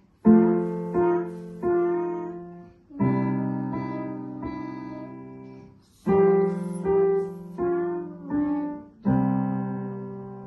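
Digital piano playing a slow, simple tune: single melody notes over held low chords, each struck and left to fade, in short phrases that start afresh about every three seconds.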